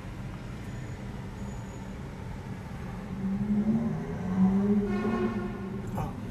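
Low traffic and road noise heard inside a moving electric car's cabin. About halfway in, a nearby car's engine note comes in: a low drone that wavers up and down and is loudest near the end.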